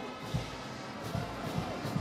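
Marching band brass playing in the stadium, with regular low beats under it.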